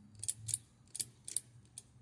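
About five sharp, uneven clicks in two seconds from a pushbutton switch and electromechanical relays snapping their contacts open and closed as an incandescent bulb is switched in a relay memory-refresh circuit.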